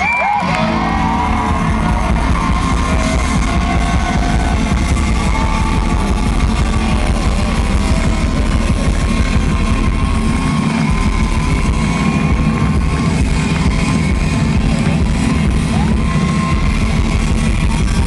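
Live band playing loud, guitar-led rock music, with electric guitars ringing out long held notes over bass and drums, recorded from within the audience.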